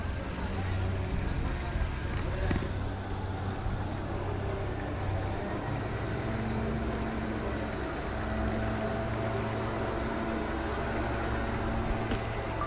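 Outdoor ambience: a steady low rumble with distant people's voices, and a faint steady hum joining about halfway through.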